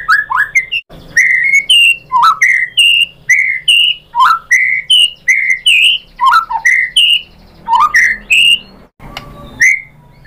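White-rumped shama singing loudly: a fast run of short whistled notes, about two a second, many sliding up or down and some dropping low, with brief pauses about a second in and near the end.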